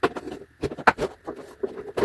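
Empty polyethylene milk jug handled in the hands, its thin plastic crackling and popping in a string of irregular clicks.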